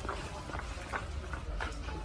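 A plastic bottle being drunk from and handled: several faint clicks and rustles over a low steady rumble of background noise.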